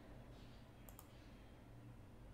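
Two quick computer mouse clicks about a second in, over near-silent room tone with a faint low hum.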